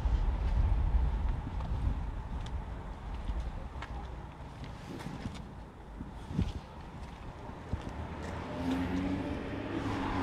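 Outdoor street background: a low rumble that fades after the first few seconds, with a few faint taps and a faint voice near the end.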